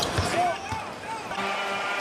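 A basketball dribbling on a hardwood court over arena crowd noise, with a few sharp bounces near the start. A steady held tone comes in just past halfway.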